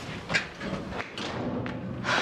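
A few sharp knocks or thumps, irregularly spaced, over faint background music.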